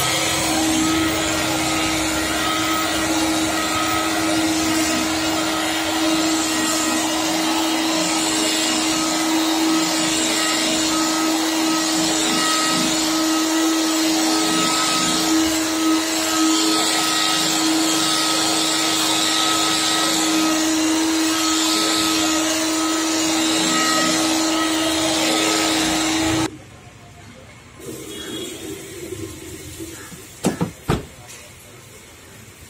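Electric rotary car polisher with a buffing pad running steadily against car body paint while compounding it, a constant motor hum with a whir. It shuts off abruptly near the end.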